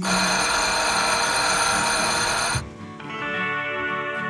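A loud bell ringing, which cuts off suddenly about two and a half seconds in. Soft guitar music takes over after it.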